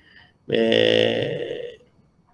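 A man's voice holding one steady, low vowel sound for just over a second, a drawn-out hesitation like "ehhh". It starts about half a second in and trails off.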